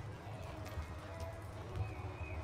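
Hoofbeats of a reining horse working on soft arena dirt, heard as irregular dull thuds, with faint voices in the background.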